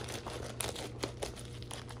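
Plastic packaging crinkling as it is handled, an irregular scatter of small crackles and rustles.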